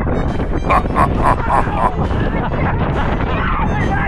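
Riders on a towed banana boat yelling and laughing in a quick run of short shouts, over a steady rush of wind and water on the microphone.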